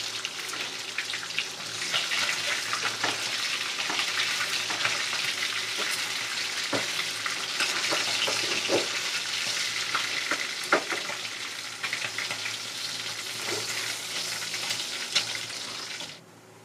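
Tilapia frying in hot oil in a wok: a steady sizzle, broken by occasional sharp clicks and scrapes of metal tongs against the pan as the pieces are turned and lifted out. The sizzle cuts off abruptly at the end.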